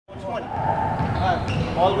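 Basketballs bouncing on a hardwood gym floor with voices echoing through a large gymnasium, and a sharp thud about one and a half seconds in.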